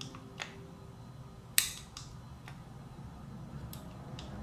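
SCCY CPX-1 9mm pistol being dry-fired by hand: a few small clicks from the trigger and action, with one sharper click about a second and a half in, as the trigger is squeezed slowly through its long take-up to the wall and break.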